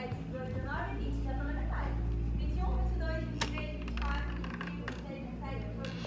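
A woman's voice counting aloud at a distance, over the low rumble of a phone being carried while its holder moves. A sharp click sounds about three and a half seconds in.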